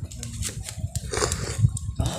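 A man eating hủ tiếu noodle soup from a coconut-shell spoon: a short slurp of broth a little after a second in, with mouth and chewing sounds around it.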